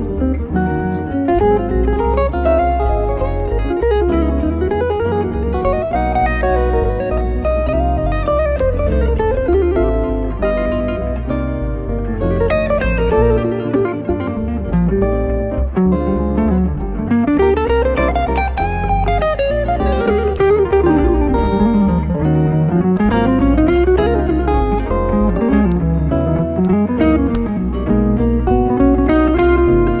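Live jazz duo of two electric guitars, a hollow-body archtop and a solid-body electric: a melody line sweeping smoothly up and down in pitch over chordal accompaniment and steady low notes.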